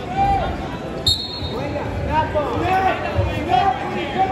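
Coaches and spectators shouting in a large, echoing gym, with several dull thuds of wrestlers' footwork on the mat and a short high squeak about a second in.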